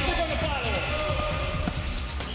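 Futsal match sound in an echoing indoor hall: the ball being played on the hard court and players' shouts, mixed with background music.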